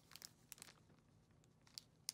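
Faint crinkling of clear plastic packaging and a paper instruction sheet being handled, a few soft crackles about half a second in and again near the end.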